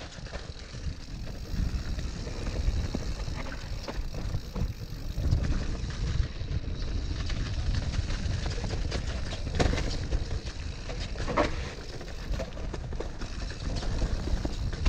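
Mountain bike being ridden over rough ground: a constant low rumble with frequent knocks and rattles from the bike.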